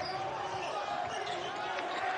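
Live court sound of a basketball game in a near-empty arena: the ball bouncing on the hardwood and players moving, with faint voices and a steady tone running underneath.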